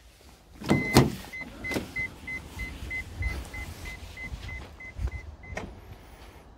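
Toyota Estima's power sliding door running under its motor, with its electronic warning beeper sounding about three times a second for some four seconds. A couple of clunks come about a second in, and another clunk near the end.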